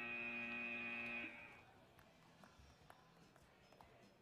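End-of-match buzzer at a robotics competition field: a steady electronic buzz that stops abruptly about a second and a quarter in, signalling time is up. After it, only faint background noise.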